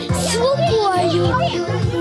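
Children's voices and chatter over background music with a low bass line.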